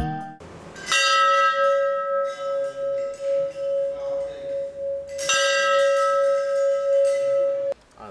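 A temple bell struck twice, about four seconds apart. Each strike rings on with a slow pulsing hum, and the ringing cuts off suddenly near the end.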